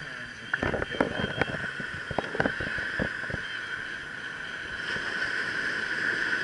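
Small waves washing up the beach with a steady rushing hiss, broken in the first half by a run of sharp clicks and knocks from handling the camera.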